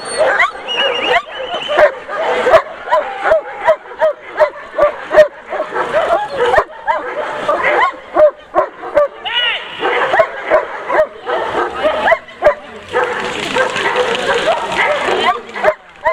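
German Shepherd Dog barking in quick succession, about two barks a second, at a protection helper holding a padded bite sleeve, during the bark-at-the-helper stage of protection work.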